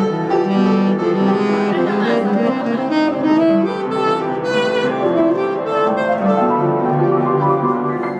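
Saxophone and upright piano playing a live duet, the saxophone's notes held over the piano.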